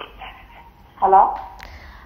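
Speech only: one short 'hello' about a second in, otherwise quiet.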